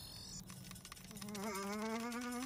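A low electronic buzzing hum, a robot-style sound effect, starts about a second in and holds steady while creeping slightly upward in pitch. A brief high tone sounds at the very start.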